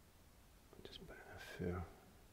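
A man's soft whispered mutter that ends in a short low hum near the end.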